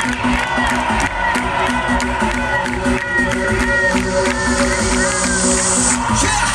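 Live concert music over the stage PA, with held steady notes and a short repeating phrase, and a festival crowd cheering, recorded on a phone from among the audience.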